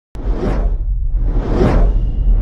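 Logo-intro sound design: two whoosh sound effects, each swelling and fading, about half a second in and again near the end, over a steady deep bass rumble that starts abruptly just after the opening.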